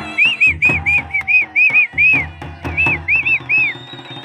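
Folk band music: a shehnai-style reed horn plays a run of short high notes that each rise and fall, about three or four a second, over steady drum beats.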